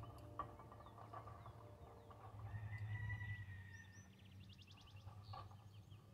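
Faint outdoor ambience: birds calling, with a held whistled note and then a quick, fast-repeating trill a little past the middle, over a low steady rumble.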